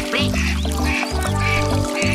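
Children's song backing music with a steady bass line, with a cartoon duckling quacking in short calls about every half second.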